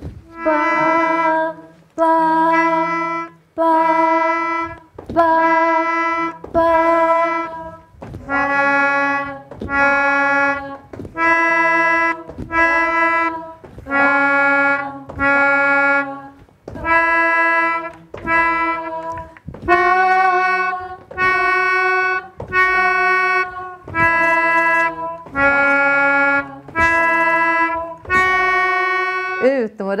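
A melodica plays a slow series of separate, steady reedy notes, about one a second, stepping up and down in pitch. The notes are the pitches of a written exercise being played through one by one.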